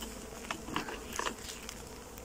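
Honeybees buzzing over the open top bars of a wooden brood box, worker bees fanning: a faint steady hum with a few short clicks.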